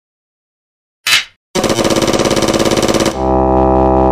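Intro sound effects: a single sharp clapperboard snap about a second in, then a fast, even mechanical rattle of about twenty strokes a second for about a second and a half, ending in a steady held low chord.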